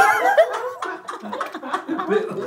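A small group laughing and snickering, loudest in the first half second and then quieter, broken-up laughter.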